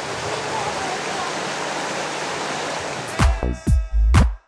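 Steady rushing outdoor noise for about three seconds, then electronic dance music with a heavy kick drum cuts in at about two beats a second.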